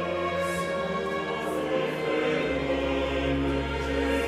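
Choir and baroque orchestra performing a French Baroque grand motet, with sustained choral chords over the strings. Low bass notes come in strongly about halfway through.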